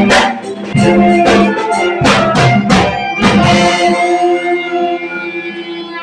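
A student ensemble of plastic recorders with saxophones, violin and drum playing together, with sharp drum strikes up to a little over three seconds in. After that the drumming stops and a chord is held on, fading slightly.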